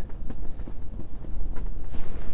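Wind, a steady low rumble, with a few faint ticks.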